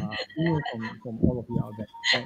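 A person's voice in four short, broken bursts, heard through a video-call connection.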